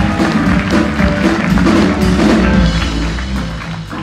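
Live band playing, with piano and a low bass line, a little quieter near the end.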